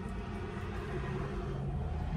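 Steady low rumble of background noise inside a car cabin.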